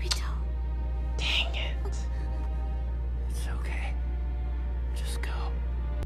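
Anime episode soundtrack playing quietly: soft sustained background music with a few short, quiet voice lines spread through it. A steady low hum runs underneath.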